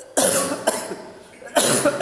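A person coughing: two loud coughs about a second and a half apart.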